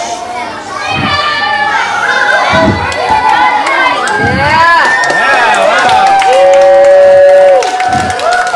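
A crowd of children shouting and cheering, many voices overlapping and getting louder, with one long held shout near the end.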